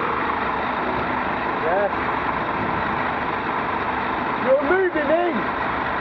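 Bus engine idling close by, a steady hum with a few fixed tones in it. Short voice-like sounds come through about two seconds in and again near the end.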